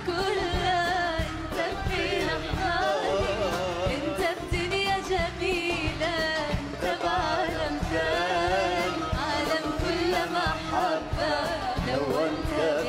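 A woman singing an ornamented, melismatic Arabic pop vocal line over a live band with drums.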